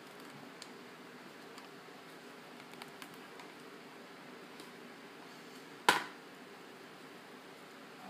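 Faint rustles and small ticks of hands handling a ribbon bow over a steady low room hum, with one sharp knock about six seconds in.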